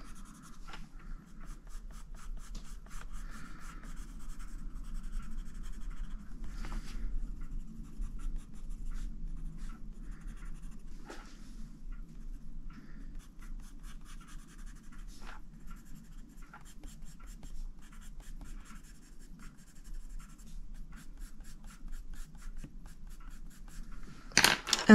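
Prismacolor Premier coloured pencil scratching on the paper of a colouring book in rapid, short back-and-forth shading strokes, a few strokes louder than the rest.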